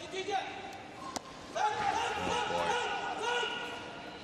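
A single sharp thud about a second in as a weightlifter drives a loaded barbell overhead in a split jerk and lands on the platform, followed by voices shouting and cheering in the arena.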